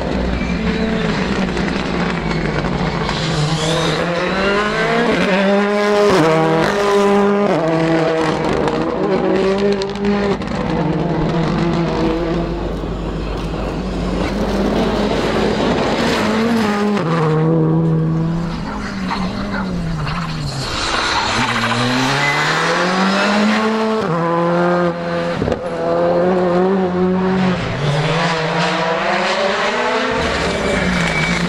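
Rally cars at full speed on a loose gravel stage, engines revving hard and shifting up and down, the note climbing and falling repeatedly as they pass. A single sharp crack sounds about 25 seconds in.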